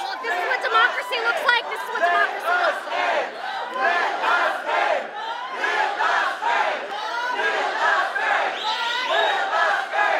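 A crowd of protesters' voices, many overlapping at once and going on without a break.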